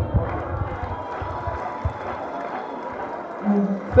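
Audience applauding, an even clatter of many hands clapping that is quieter than the speech around it, with a brief voice near the end.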